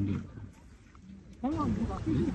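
Speech: a voice trails off, there is a short lull of about a second, and then talk starts again near the end.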